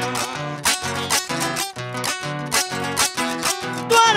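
Guitar-type plucked string instrument strumming a repeated chord pattern, about three strokes a second: the instrumental interlude between sung improvised décimas.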